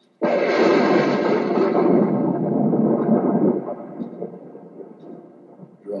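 Thunder sound effect: it starts suddenly with a loud clap, rumbles steadily for about three seconds, then fades away.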